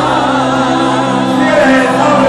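Worship music: a singing voice holding wavering notes with vibrato over steady sustained backing chords, with the congregation singing along.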